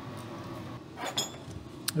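A few light metallic clinks about a second in and a single sharp click near the end: a hand tool and a metal exhaust-mount clip being worked in an engine bay.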